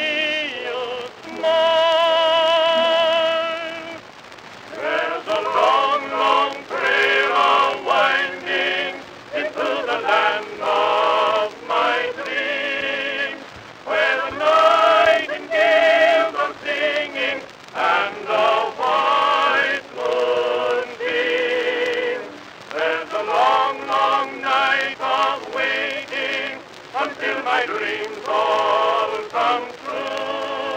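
Old acoustic recording of a sentimental ballad: a singer holding long notes with strong vibrato, over a steady hiss of record surface noise.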